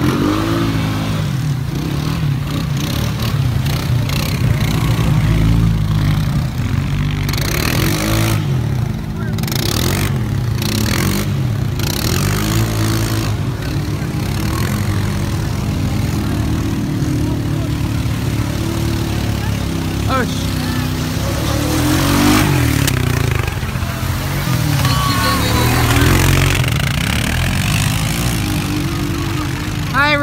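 ATV engines running steadily in shallow river water, with water splashing around the quads. Indistinct voices shout over the engines in the last third.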